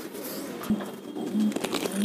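Domestic pigeons cooing, a few short low coos with a small click about a second in.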